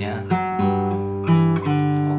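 Taylor 214ce-N nylon-string acoustic guitar played fingerstyle. A low G bass note rings under chord notes, and fresh notes are plucked in turn a little over a second in.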